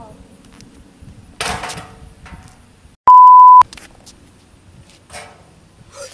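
A single loud, steady, high-pitched beep about half a second long, three seconds in: an edited-in censor bleep over a word. Around it only faint outdoor noise, with a brief noisy burst about a second and a half in.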